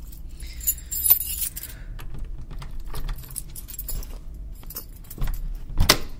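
Keys jangling and clicking as a front door is unlocked, with a heavy thump near the end.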